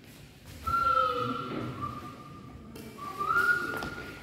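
A high whistling tone: one long note held for about two seconds and falling slightly, then a second note rising near the end.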